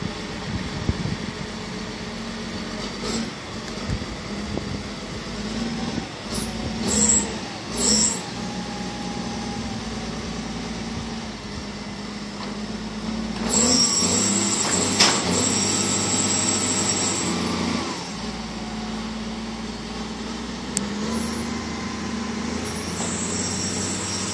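A large snow plow's engine running steadily as it works the street, with a few louder noisy flare-ups, the longest from about 13 to 18 seconds in.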